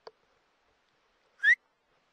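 A single short whistle, sliding upward in pitch, about one and a half seconds in. A faint click comes just before it.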